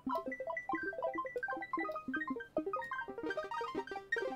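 FL Studio's Sytrus FM synthesizer playing a dense cascade of short plucked notes at random pitches, the 'twinkling' effect made with the piano roll's Randomize function. The sound grows brighter shortly before the end.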